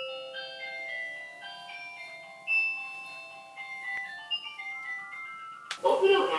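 Electronic chime melody of a Japanese bath water heater's control panel announcing that the bath is ready: a simple tune of clean, steady beeping notes stepping up and down in pitch.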